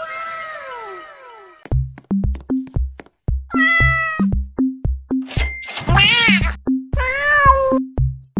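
A falling pitched sound, then a fast electronic meme beat with a kick drum, about three beats a second, starts about two seconds in. Three cat meows come over it, the last two rising and falling in pitch.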